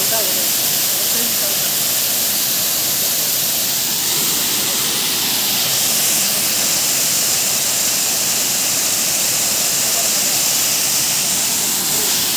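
Waterfall: a steady rush of water pouring over rock.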